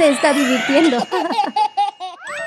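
Cartoon characters laughing, a baby's laugh among them, in short rapid bursts that fade out near the end.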